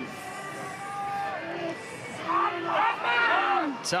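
Men's voices calling out on a rugby pitch as forwards pack down for a scrum, over crowd noise from the stands.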